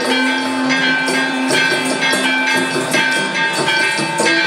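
Music with long held notes over a steady percussion beat, about two strokes a second.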